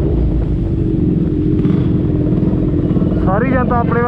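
Honda CBR650R's inline-four engine running steadily at low revs as the bike slows in town traffic. A man laughs and starts talking near the end.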